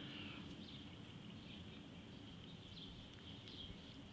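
Quiet outdoor ambience with a few faint, scattered bird chirps over a steady low hiss.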